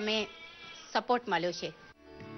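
A woman's voice speaking, with one drawn-out syllable.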